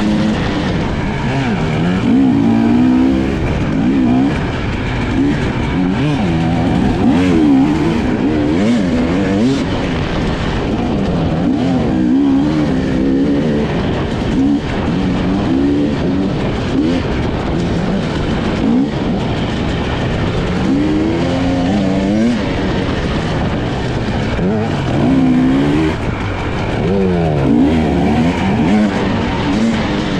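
Husqvarna off-road motorcycle engine revving hard and falling back again and again as the rider opens and closes the throttle and shifts along a dirt trail, heard from on the bike itself.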